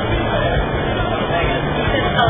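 Indistinct talking over a steady low rumble of outdoor background noise.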